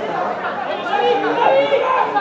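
Several voices shouting and calling over one another at a football match, with no single voice standing out.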